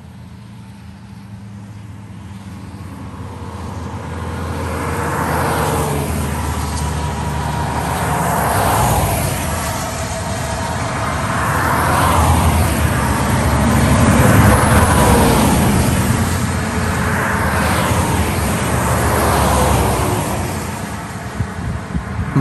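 Road traffic: a steady low rumble with vehicles going past one after another, every two to three seconds. The sound swells up over the first five seconds.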